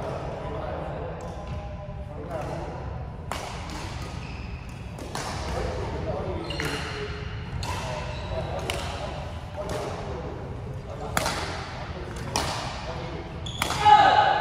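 Badminton rackets striking a shuttlecock in a rally: sharp, echoing hits at irregular intervals of about a second, starting a few seconds in, with voices talking in the background.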